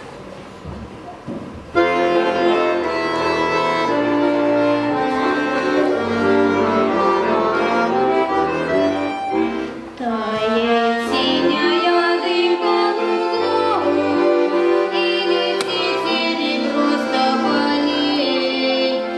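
Accordion playing a song's introduction, starting suddenly about two seconds in with held melody notes over separate bass notes. There is a short break near the middle before the next phrase.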